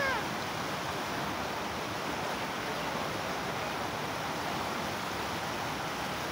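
Steady rushing of floodwater running across a flooded street after heavy rain.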